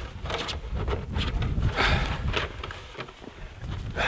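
A clear corrugated Tuftex PolyCarb polycarbonate panel crackling and rustling as it is twisted by hand, with the loudest crackle about two seconds in.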